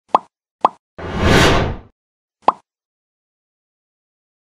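Animated logo intro sound effects: two quick pops, a whoosh that swells and fades over about a second, then a third pop.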